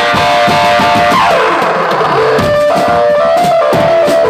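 Marching drum band playing: hand-carried drums beaten in a busy rhythm under a loud amplified guitar-like melody from horn loudspeakers, with a falling pitch slide about a second in.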